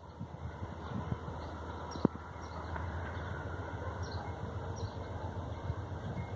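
Distant diesel locomotive's engine, a low steady rumble, with birds chirping faintly over it and one sharp click about two seconds in.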